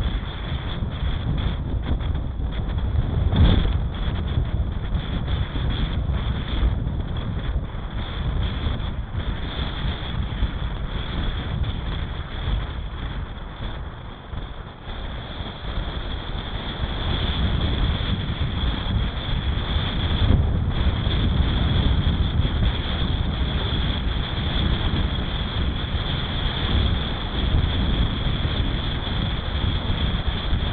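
Wind buffeting the microphone of an Oregon Scientific ATC5K action camera on a road bike moving at speed, a loud steady rumble. It briefly surges about three seconds in, eases for a couple of seconds around the middle, then picks up again.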